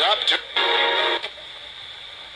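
Handheld radio-sweep spirit box playing through its small speaker: choppy fragments of broadcast voices in the first second or so, then steady static hiss. The investigator takes one fragment for a voice saying "I'm DR."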